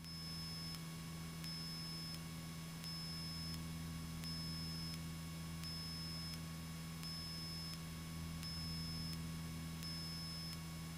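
Faint, steady hum of a small single-engine airplane's engine and propeller at climb power, with a faint short high beep repeating about every second and a half.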